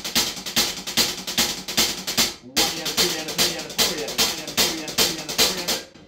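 Maple drum kit playing a groove of single-stroke 16th notes on the hi-hat over the bass drum on all four quarter notes. The playing breaks off for a moment about two and a half seconds in, then picks up again.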